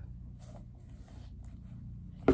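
Faint handling sounds as a sneaker is turned over in the hands: a few soft, light clicks and rustles over a steady low room hum.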